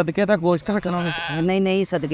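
Speech only: a person talking rapidly and animatedly, drawing out one wavering, quavering vowel about halfway through.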